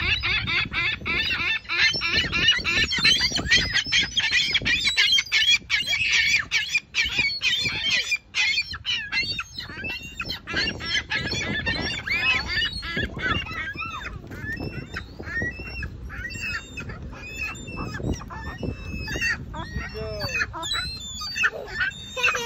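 Ring-billed gulls giving repeated 'choking calls'. The calls overlap densely for about the first ten seconds, then thin out into separate notes.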